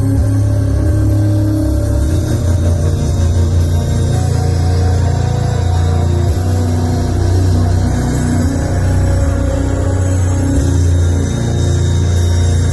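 Music: a loud, dark hip-hop beat with a heavy, sustained bass, played over a live venue's PA system.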